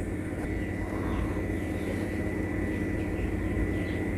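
A steady low rumble, like an engine drone, with a thin steady high whine over it and no sharp strikes.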